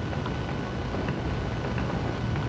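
A steady low background rumble, with a few faint, short scratches of a pen writing on paper.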